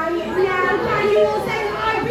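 A group of young children shouting and calling out together, many high voices overlapping.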